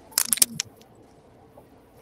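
Brief jingle of small metal objects, a quick flurry of sharp clinks in the first half second.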